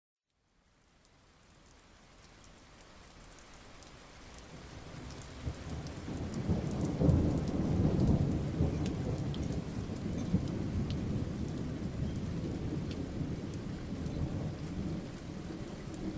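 Rain and rolling thunder fading in from silence; a low rumble swells to its loudest about halfway in, then the rain runs on steadily with scattered sharp ticks of drops.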